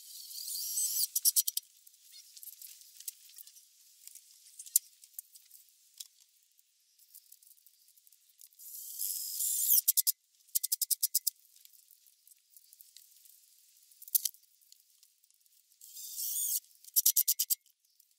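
Cordless drill/driver driving screws three times. Each run builds up and ends in a rapid string of clicks as the screw seats. Small rattles and clicks come between the runs.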